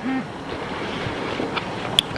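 Steady background hiss with no distinct event in it, and a short murmur of a voice right at the start.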